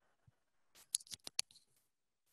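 A quick run of about six sharp clicks about a second in, over otherwise gated, near-silent call audio.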